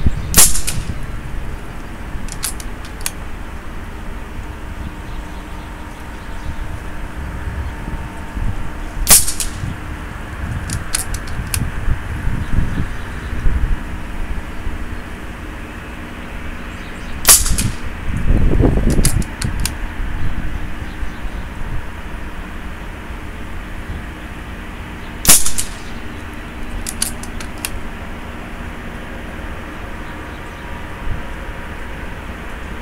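FX Dreamline .22 PCP air rifle, regulated at about 105–110 bar and converted to a 700 mm barrel with a pellet liner, firing 17.5 grain slugs at about 1,000 feet per second: four sharp shots roughly eight seconds apart. A couple of seconds after each shot come a few short clicks of the action being cycled to load the next slug, over steady wind noise.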